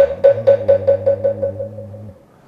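Moktak (Korean wooden fish) struck in a roll that speeds up and fades away, the usual closing roll of a round of chanting. Each hollow knock rings briefly. A low chanted note is held underneath and stops just after the roll dies out.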